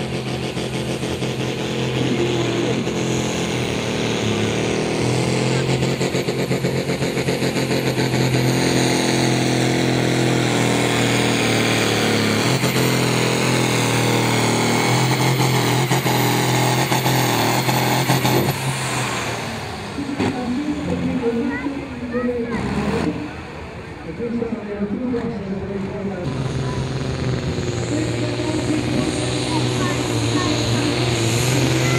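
Modified John Deere pulling tractor's diesel engine running hard as it drags the weight sled down the track, its pitch shifting as the pull goes on, then dropping away about 19 seconds in. A man's voice then speaks into a microphone.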